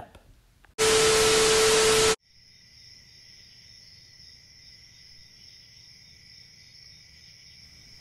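A loud burst of static-like hiss with a steady low tone through it, lasting about a second and a half and cutting off sharply. It gives way to a faint, steady chorus of crickets chirping.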